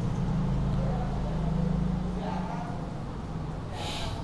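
A steady low hum fills a pause in the talk, with a faint murmur partway through and a short hiss near the end.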